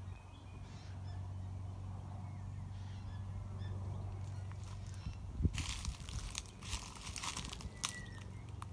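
Currawongs calling faintly in short notes over a steady low hum. About five and a half seconds in there is a sharp thump, followed by a couple of seconds of rustling and clicking.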